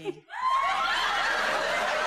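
Audience laughing, many voices together: it breaks out about half a second in, just after a spoken line ends, and holds steady.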